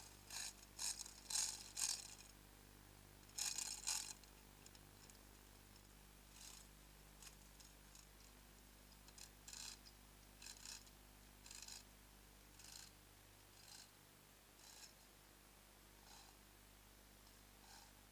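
Faint ratcheting clicks of a lever chain hoist being worked, in short clusters about once a second, louder in the first few seconds, over a low steady hum.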